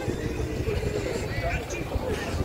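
Busy street ambience: people talking nearby and a passing vehicle, over a steady low rumble.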